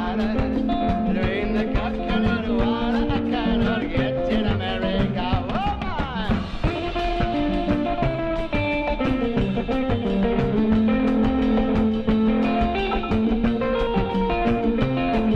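Live band music: an electric guitar carries the melody, with bent and wavering notes about five to six seconds in, over upright bass, drum kit and congas keeping a steady beat.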